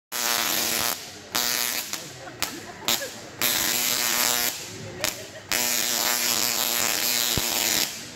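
A Tesla coil firing electric arcs onto a banana sitting on its toroid, making a loud, pitched buzz. The coil runs in bursts that switch on and off sharply: several short ones, then a longer run of about two and a half seconds near the end.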